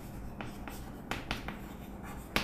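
Chalk writing on a chalkboard: soft scratching strokes broken by several sharp taps as letters are formed.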